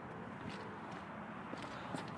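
Faint footsteps on pavement over low background noise.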